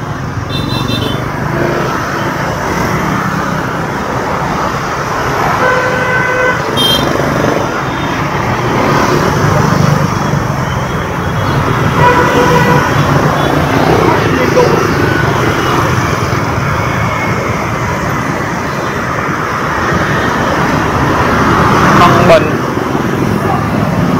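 Busy city street traffic heard while riding through it: a steady rumble of engines and road noise, with several short horn toots, about six seconds in, again about twelve seconds in and near the end.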